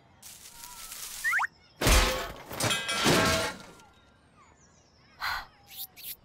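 Cartoon sound effects: a rushing whoosh and a short rising zip, then a sudden loud crash with a deep thud and clatter about two seconds in that dies away over the next second or so. Two brief swishes come near the end.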